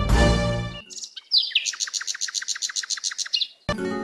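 A small bird calling in a rapid trill of evenly repeated high notes, about eight a second, for about two seconds after a first sliding note. Background music fades out in the first second and starts again near the end.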